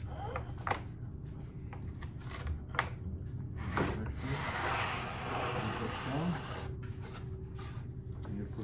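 Plywood centerboard mock-up swung on its pivot by a control rope: a few short knocks of wood on wood, then about three seconds of plywood rubbing and scraping across plywood, over a steady low hum.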